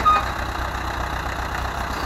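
Ursus C-360 tractor's three-cylinder diesel engine running steadily under load as it pulls a potato harvester down a truck's loading ramp.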